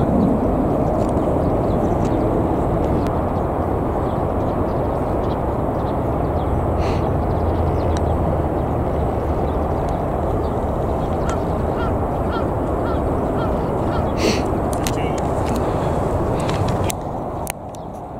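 Steady wind rumble on the microphone. About two-thirds of the way through, a run of about seven short high calls comes in quick succession, a little over two a second.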